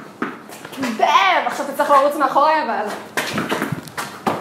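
High-pitched excited vocal exclamations without clear words, rising and falling in pitch, followed by a few short sharp knocks near the end.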